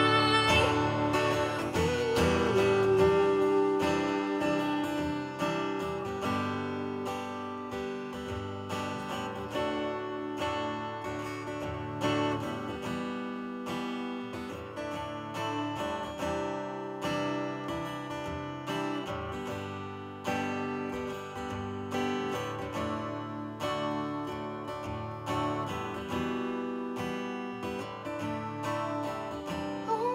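Steel-string acoustic guitar played solo, strummed and picked through an instrumental passage of a song. A woman's singing trails off over the first few seconds, and the music swells again right at the end.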